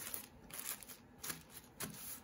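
A few faint rustles of a plastic zip-top bag as hands press a folded damp paper towel flat inside it.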